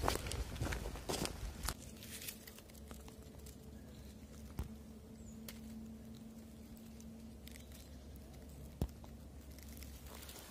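Footsteps crunching on dry twigs and forest litter for the first couple of seconds, then quiet with a faint steady hum and a couple of isolated clicks.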